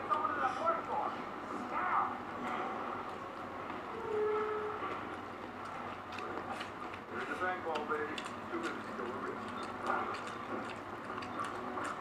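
Chewing and small mouth clicks from someone eating rice by hand, over a steady background hum with brief faint voices now and then.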